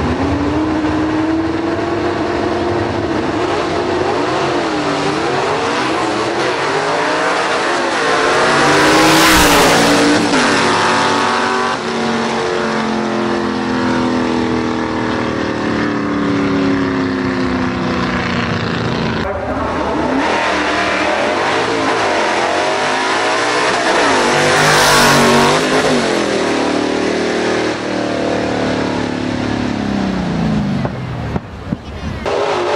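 Two gasser drag cars' V8 engines revving at the starting line, then launching at full throttle, loudest around the launch, and pulling away down the strip with rising and falling pitch through the gear changes. A second loud full-throttle surge comes later.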